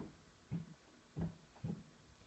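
Pencil strokes on notebook paper while thickening the downstrokes of cursive lettering: four short, soft rubs about half a second apart.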